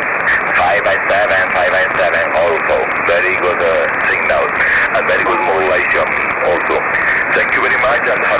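A man's voice received over a single-sideband amateur-radio link relayed by the FO-29 satellite: narrow and muffled, with steady hiss, the words hard to make out.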